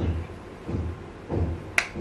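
A sharp snap of the hands near the end, over a soft low thump that repeats about every two-thirds of a second.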